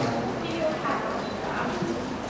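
Speech: soft, broken-up voices talking.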